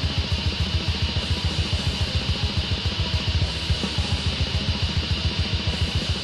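Black metal band playing: distorted guitars over fast, even drumming, with no vocals in this stretch.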